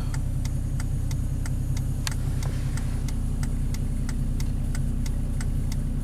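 Truck engine running steadily, heard inside the cab as a low hum, with a light even ticking about four times a second.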